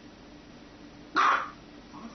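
A small white dog gives a single short bark about a second in.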